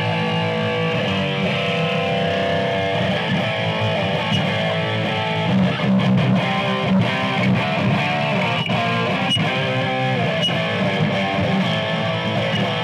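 Electric guitar played through a Laney IRT valve amplifier with heavy distortion: metal rhythm chords, sustained and changing, played without a break.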